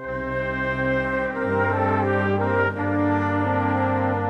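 A Spanish banda de música playing the opening of a Semana Santa processional march: full brass chords held long, with the bass note stepping down about a second and a half in.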